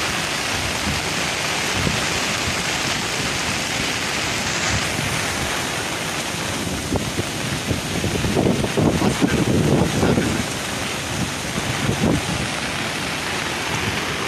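Steady rush of heavy rain together with turbulent floodwater churning below a concrete walkway. Wind buffets the microphone, gusting hardest about eight to ten seconds in and briefly again near the end.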